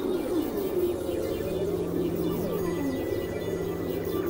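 Experimental electronic synthesizer music: a steady low drone under many swooping tones that glide down and up. A thin, steady high tone comes in a little past halfway.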